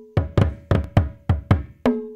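Percussion music: a quick, slightly uneven run of struck notes, about four a second, each ringing briefly at a low pitch.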